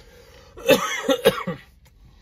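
A person coughing: a quick run of about four coughs starting about half a second in and lasting about a second.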